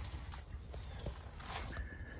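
Faint outdoor background: a steady low rumble with a few soft clicks scattered through it, and a faint thin tone near the end.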